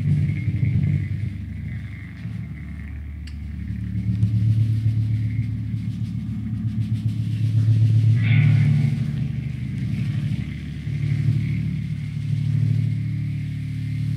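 Electric bass guitar holding low, sustained notes through its amplifier, a slow rumbling drone that moves to a new pitch every few seconds.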